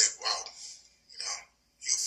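Speech only: a voice talking in short phrases with brief pauses, picking up again near the end.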